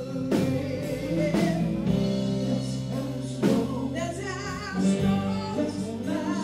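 A live rock band: a woman singing lead over electric and acoustic guitars, bass and drums, with a few hard drum hits.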